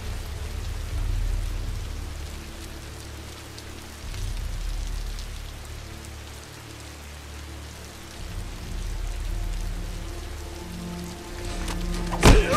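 Steady heavy rain falling on the ground, with low background music underneath that swells up in waves every few seconds.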